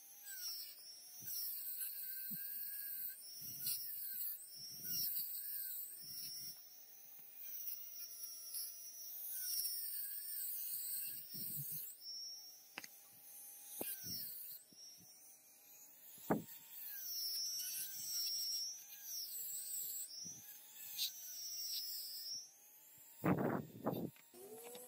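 Small rotary tool with a wire brush running at high speed against a rusty steel lighter part, scrubbing off rust. Its whine dips and recovers over and over as the brush is pressed on and eased off. There are a few sharp clicks from metal parts.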